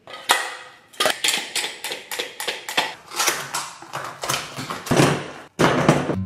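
Hand tools being worked, making a quick run of sharp plastic-and-metal clicks and clacks, a few a second, with a short break near the end.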